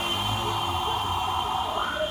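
KDK industrial ceiling fan running at speed: a steady low motor hum under a rush of moving air, with a thin, steady high-pitched whine over it.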